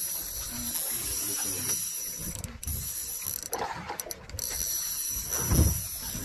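Baitcasting jigging reel being cranked, its gears whirring steadily with two brief pauses in the winding.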